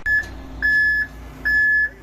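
Concrete mixer truck's back-up alarm beeping, a single steady-pitched beep about once a second, over the low steady sound of the truck's diesel engine running while it moves.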